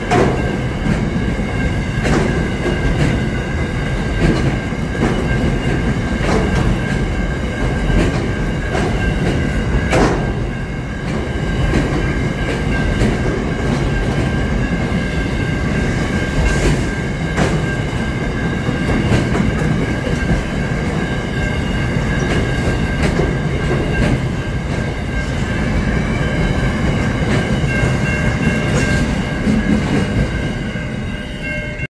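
Container freight wagons rolling past close by: a loud, steady rumble of steel wheels on rail, broken every second or so by clacks as wheelsets cross rail joints, with a steady high-pitched tone held over it.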